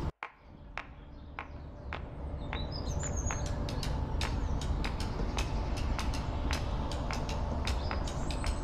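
Outdoor ambience with small birds chirping, a low steady rumble, and scattered short sharp clicks; the sound cuts out briefly just after the start and fades back up over the next couple of seconds.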